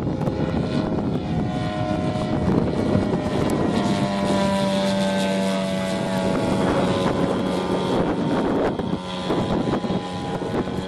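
Engine and propeller of a 1/3-scale Fokker DR1 triplane model running steadily in flight, its drone shifting slowly in pitch as the plane passes across the sky.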